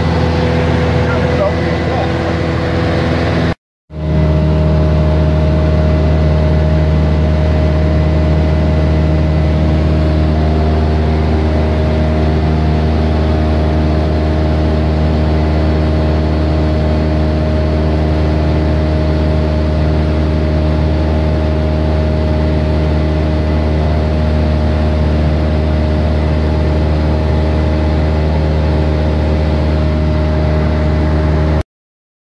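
A single-engine light aircraft's piston engine and propeller drone steadily in cruise, heard loud inside the cabin. A brief dropout cuts the sound just before four seconds in, then the same steady drone resumes.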